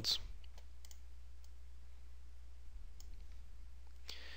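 A few faint computer mouse clicks, scattered through the pause, over a steady low electrical hum.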